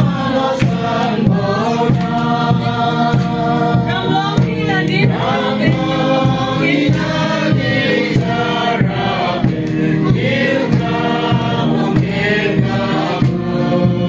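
A mixed group of men and women singing a song together, with hand-clapping keeping a steady beat.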